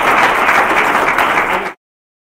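Audience applauding, a dense steady clapping that cuts off abruptly near the end.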